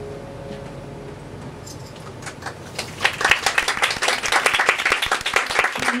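The band's final sustained chord fades out over the first second, then the audience begins clapping about two seconds in, swelling into full applause from about three seconds.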